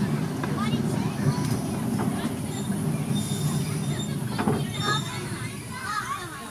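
Miniature-railway passenger train running slowly round a curve: a steady low rumble of the locomotive and coaches on the track, with voices in the background.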